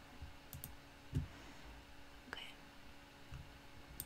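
Faint computer mouse clicks, a few in the first second, over a quiet steady hum, with a soft low thump about a second in.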